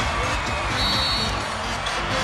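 Arena sound-system music with a pounding bass beat over crowd noise, with a short high tone about a second in.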